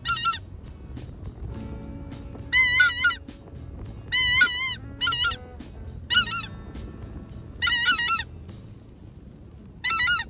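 Geese honking: bursts of rapid, wavering calls every second or two, over faint low background noise.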